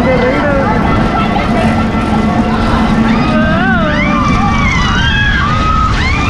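Steady low rumble of a spinning amusement-park ride's machinery, with riders' voices crying out in rising and falling shrieks from about halfway through.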